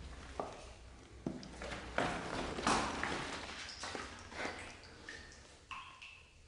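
Footsteps of sneakers on a gritty concrete floor: a handful of uneven steps with scuffing and crunching of grit underfoot, the loudest scraping in the middle.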